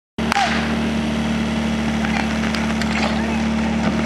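Portable fire pump engine running at a steady idle. A sharp crack comes just after the start, with scattered knocks and shouts over the hum.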